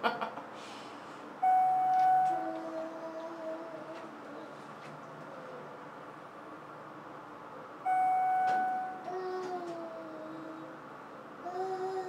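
Elevator chime sounding twice, about six seconds apart: each a steady high tone lasting about a second, followed by quieter, lower, falling tones.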